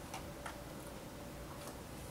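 A few faint clicks from a plastic iced-coffee cup, ice inside, as it is picked up off a wooden table and carried, over a faint steady hum.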